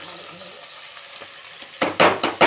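Rice and green peas sizzling in hot oil in a cooking pot, with a loud burst of stirring and scraping near the end.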